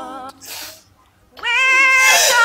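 A woman's voice holding a long, wavering sung note that fades out. After a breath and a short pause, another long note glides up and is held from about one and a half seconds in.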